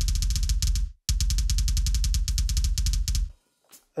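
Alesis Strata Prime electronic kick drum on its 'metal kick' preset, played in fast, even double-pedal rolls of more than ten strokes a second, each stroke a deep thud with a sharp click on top. Two runs with a brief break about a second in, stopping a little after three seconds.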